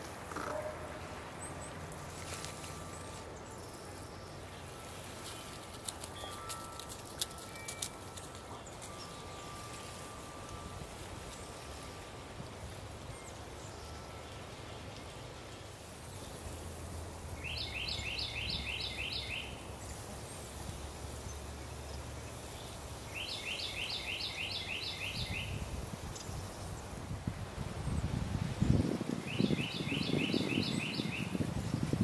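Outdoor ambience with a songbird singing a fast, dry trill of rapidly repeated high notes, three times about six seconds apart in the second half, each lasting about two seconds, over a low steady rumble.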